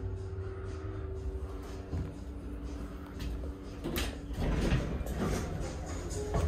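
A 1995 Stannah passenger lift arriving at a floor: a steady hum while the car travels, a clunk about four seconds in as it stops, then the car doors sliding open.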